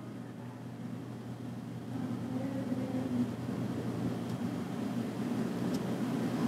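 Low, steady background rumble that grows gradually louder, with no clear events in it.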